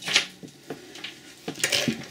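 Metal costume-jewelry chains and pendants clinking against each other as they are picked through by hand: a short jingle just after the start, a few faint ticks, and another brief jingle near the end.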